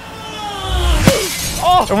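A descending falling whistle as a melon drops from the boom-lift platform, then a smashing impact about a second in as it hits the ground.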